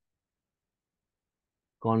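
Dead silence: the recording is blank, with no room tone. Speech begins near the end.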